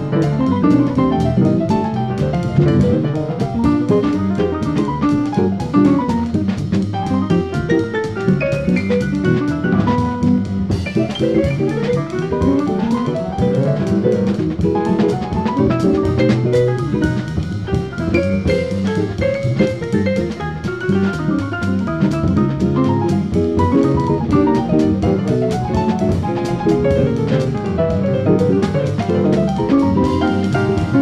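Live jazz band playing without a break: electric jazz guitar in quick runs of single notes over a drum kit.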